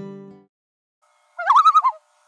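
The last chord of acoustic-guitar closing music rings out and fades within about half a second. After a pause, a short bird-like call with a rapidly wavering pitch sounds for about half a second near the end.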